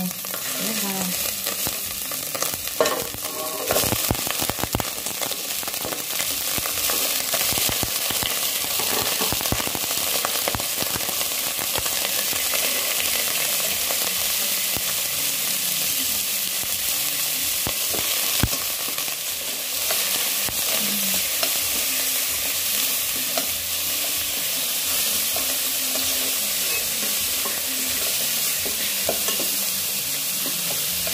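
Pork rib pieces sizzling steadily as they sear in a little hot oil with minced onion in a stainless steel pot. Several sharp clicks and knocks come about three to five seconds in, as more pieces go into the pot.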